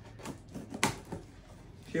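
A blade cutting through the packing tape of a cardboard box: a few short scrapes and clicks, the sharpest just under a second in.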